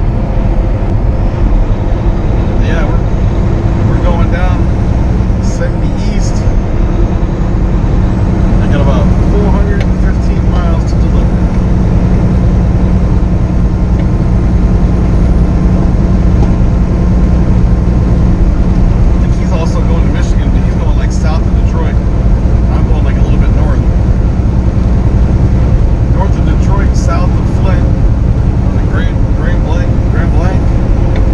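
Semi truck (2015 Kenworth T680) cruising at highway speed: a steady low engine drone and road noise heard inside the cab. Faint, indistinct voice-like sounds come and go over it.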